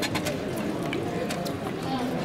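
Low murmur of a watching crowd's voices, with scattered sharp clicks and taps throughout.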